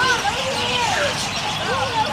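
Background chatter of several people talking at once, overlapping voices with no single clear speaker.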